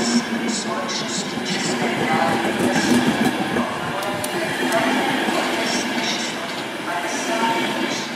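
Czech Railways passenger coaches of a departing express rolling past at low speed, with wheel clicks over the rail joints and a continuous rolling rumble.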